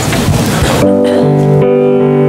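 Rustling and shuffling of a congregation getting to its feet, then about a second in the worship band (piano, violin and cello) starts playing held chords.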